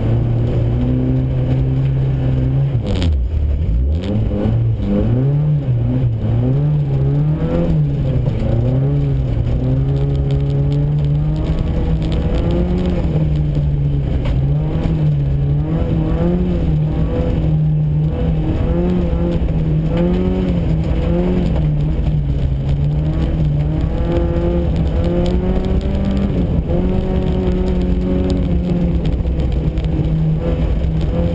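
Volkswagen Golf GTI rally car's engine heard from inside the cabin, its revs rising and falling again and again under hard driving, with a sharp drop and climb in revs about three seconds in.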